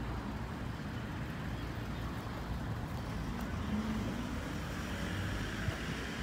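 Outdoor background noise: a steady low rumble with no distinct events.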